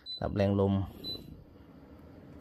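Air purifier beeping twice, short high beeps about a second apart, acknowledging button presses as its fan speed is changed.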